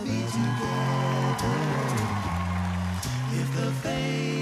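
An a cappella vocal group singing sustained chords over a deep vocal bass line that steps between notes.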